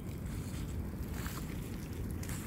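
A reclining loveseat burning in big open flames: a steady low rumble of fire, with a few brief crackles about a second in.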